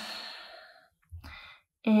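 A woman's audible exhale, a sigh-like breath out fading away over the first second, then a short breath in, before the next spoken breathing cue begins near the end.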